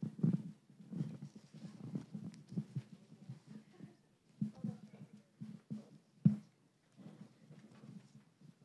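Faint, muffled room noise through the chamber's microphones: irregular low bumps and shuffling, with a sharp knock about six seconds in.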